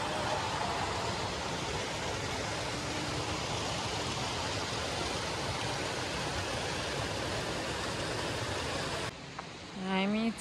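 Water pouring from inlet spouts into concrete trout raceways: a steady rushing splash that cuts off suddenly about nine seconds in.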